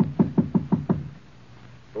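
Knocking on a door, a quick run of about six knocks within the first second. It is a sound effect from a 1950s radio drama.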